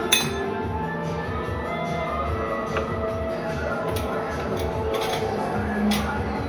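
Background music throughout, with a sharp metallic clink at the very start as a metal tortilla press is pressed shut, and a few lighter knocks later.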